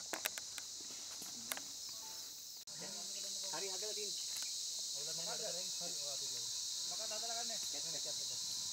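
A steady, high-pitched insect chorus in the forest, with a few sharp crackles of people moving through brush in the first two seconds. From about three seconds in, people talk quietly in the background.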